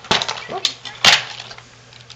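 Cardboard and plastic toy packaging being pulled apart by hand to free a toy phone: three sharp cracks and snaps over about a second, the loudest about a second in, with lighter rustling between.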